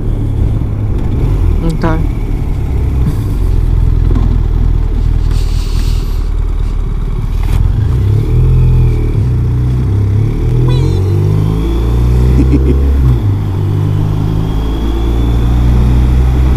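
BMW R1200RT's boxer-twin engine heard from the rider's helmet microphone, pulling through a turn and then accelerating, its pitch climbing and dropping back several times in the second half as it shifts up through the gears.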